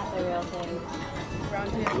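People's voices calling out and chatting over background music, with a short sharp click near the end.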